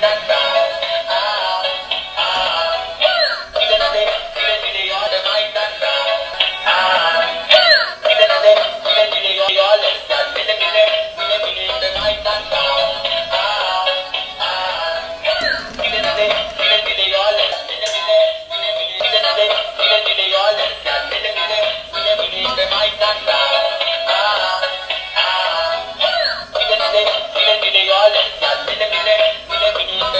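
Electronic song with a synthesized singing voice playing continuously from a light-and-music Mickey Mouse spacecraft toy's small built-in speaker. It sounds thin and has no bass.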